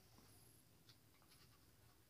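Near silence: room tone, with one faint tick about a second in.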